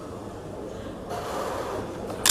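Steady background noise of a weightlifting competition hall, without voices. It swells a little about a second in, as the bar leaves the platform.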